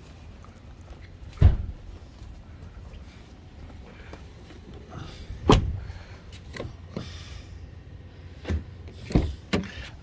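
Pickup truck door handled as someone climbs into the cab: two loud sharp thumps, about a second and a half in and again at five and a half seconds, then a few lighter knocks near the end, over a low steady rumble.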